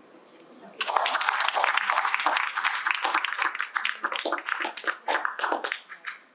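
A small group applauding: the clapping starts about a second in and thins out near the end.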